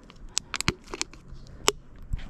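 Thin plastic water bottle crinkling and clicking as it is handled: a string of sharp crackles, the loudest one near the end.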